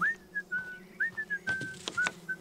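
Someone whistling a jaunty tune: a string of short notes, some sliding up into the note, with a couple of light taps in the second half.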